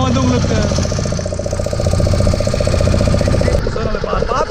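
Small fishing boat's motor running steadily under way, a fast even engine pulse over the rush of wind and splashing water. The sound changes abruptly near the end.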